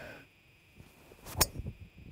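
Golf driver striking a teed ball on a tee shot: one sharp crack about a second and a half in.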